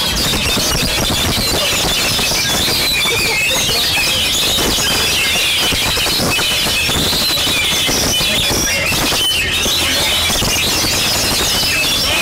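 Dense, continuous chorus of many caged oriental magpie-robins singing at once: overlapping high-pitched chattering and whistled phrases over a low background rumble.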